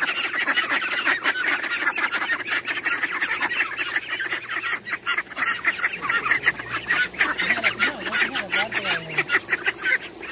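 A flock of domestic ducks quacking loudly, many calls overlapping in a continuous clamour.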